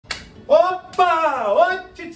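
A man's voice calling out in long, sliding tones with no clear words, with a sharp finger snap just at the start and another about a second in.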